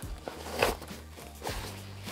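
Hands pressing and shifting a fabric rucksack with a 45-pound steel plate in its pocket: a few short rustles and knocks, the loudest about two-thirds of a second in, over soft background music.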